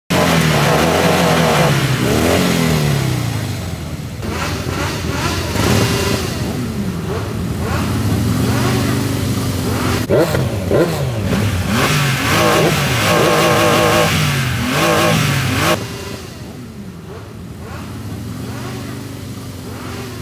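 Several motorcycle engines revving, their pitch climbing and falling again and again. The revving eases to a quieter running sound for the last few seconds.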